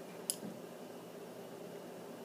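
Faint steady room hum, with one short, sharp high click about a quarter of a second in.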